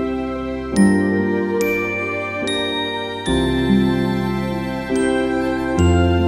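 Instrumental lullaby music: a slow, bell-like tinkling melody, with a new note struck about every second and ringing out, over soft held bass notes.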